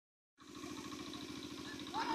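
A small engine running steadily with an even, rapid pulse. It cuts in abruptly about half a second in.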